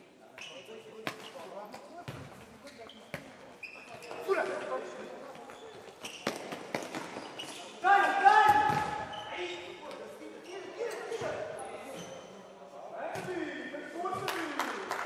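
Futsal game on an indoor court: sharp knocks of the ball being kicked and bouncing off the floor, short shoe squeaks, and players shouting, echoing in the hall. The loudest moment is a long shout about eight seconds in.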